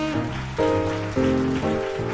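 Live jazz duo of a Yamaha grand piano and a breathy tenor saxophone. Three new piano chords come in about half a second apart.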